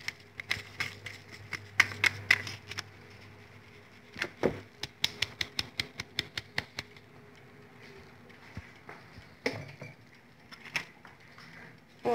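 A plastic sieve being shaken and tapped to sift flour and cocoa powder into a bowl: runs of quick, light clicks, about five a second in the busiest stretch around the middle, thinning out towards the end.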